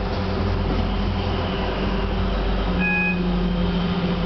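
Interior running noise of a Class 323 electric multiple unit moving at speed: steady wheel-on-rail rumble with a steady electric hum, and a brief high beep about three seconds in.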